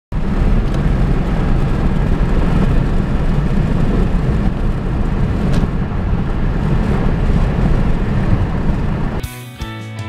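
Car driving at highway speed, steady road and tyre noise heard from inside the cabin. It cuts off about nine seconds in and music begins.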